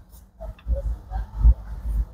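Low, uneven rumbling on the microphone, loudest about a second and a half in, from the phone being moved around.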